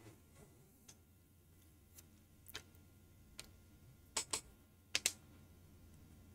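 Scattered sharp clicks of computer keyboard keys being tapped, about eight, irregularly spaced, with two quick pairs near the end.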